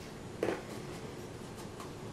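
Loose snow being scooped and packed by hand into a plastic measuring cup, with one brief crunch about half a second in, then faint handling sounds.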